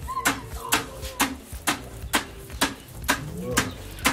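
Freshly roasted coffee beans being pounded to powder with a wooden pestle in a wooden mortar: steady thuds about twice a second.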